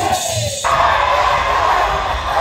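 Music with a drum beat that cuts off about half a second in, giving way to a large crowd cheering and shouting in an arena.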